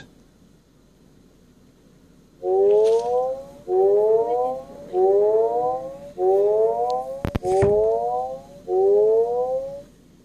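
Building fire alarm evacuation tone: six loud rising whoops, each about a second long, one after another, starting about two and a half seconds in after a quiet start. A couple of sharp knocks come about halfway through.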